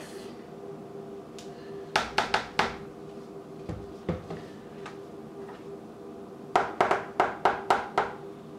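Serving spoon knocked sharply against a container's rim in two quick runs, about four knocks two seconds in and about six near the end, shaking mayonnaise off the spoon.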